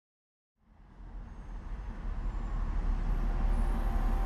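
Silence, then a low, steady rumble fades in about half a second in and swells louder.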